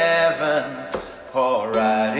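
A song: a man's voice holds long sung notes over the backing music, in two phrases with a short dip about a second in.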